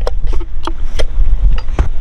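Wind rumbling on the microphone, with a few sharp clicks and knocks as the parts of a brass-and-bronze marine toilet pump are handled.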